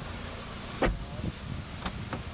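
A Toyota Vios car door shut with one sharp thump a little under a second in, followed near the end by two light latch clicks as the front door is opened.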